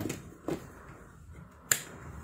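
Switched wall socket being turned on: a soft knock about half a second in, then one sharp click near the end as the socket's switch is flipped, powering the fan heater for a test after its blown fuse was bypassed with a wire.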